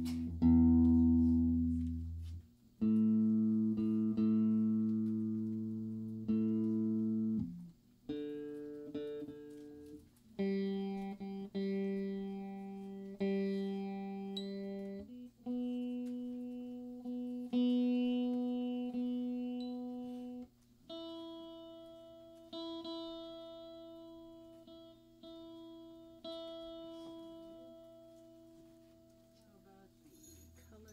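Black archtop hollow-body electric guitar being tuned: single strings plucked one at a time, about every two or three seconds, each note left to ring and fade before the next, moving between pitches as the pegs are turned.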